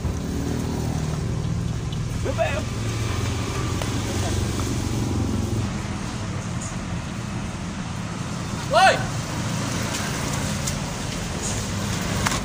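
Steady low rumble of road traffic, heavier in the first half, from motor vehicles on a village road. A short rising-and-falling call cuts through about nine seconds in, with a fainter one earlier.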